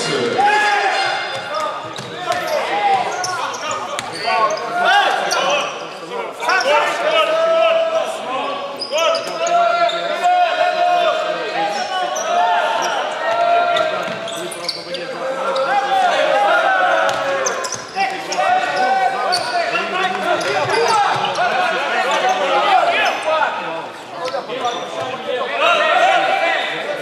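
Basketball game play in a large gym: the ball bouncing on the hardwood court, with players and benches calling out throughout.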